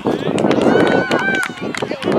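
Voices of spectators and young players calling out in the background, overlapping, with several short sharp taps mixed in.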